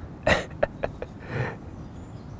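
A man's short breathy vocal sound, like a throat clear, followed by a few faint clicks and a softer breath a little later.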